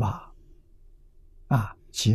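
An elderly man's slow speech in a lecture: a syllable trailing off into a breathy exhale at the start, a pause, then two short syllables near the end.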